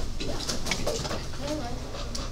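Quiet, indistinct voices of people talking at low level in a classroom, with a few light clicks or paper rustles in the first second.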